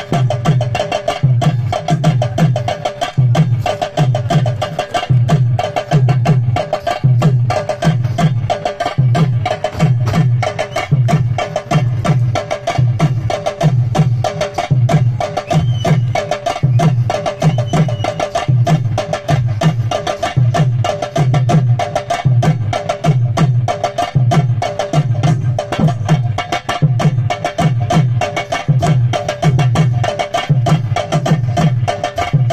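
Tamil melam folk drumming: a large barrel drum beaten with a stick together with hand drums, playing a fast, steady, repeating rhythm without pause.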